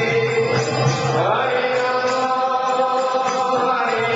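Devotional chanting (kirtan): voices sing long, held notes, with a pitch glide a little after a second in.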